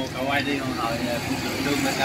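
Indistinct voices talking at a lower level than the close speech around them, over a steady low rumble.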